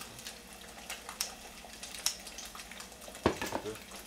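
Kitchen scissors snipping kimchi in a bowl, a few sharp clicks about a second apart, with a louder knock about three seconds in. Under it a steady sizzle from an egg frying in a pan.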